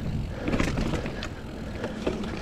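Mountain bike rolling fast over leaf-covered dirt singletrack: a steady low rumble of tyres and wind, with a few sharp clicks and rattles from the bike.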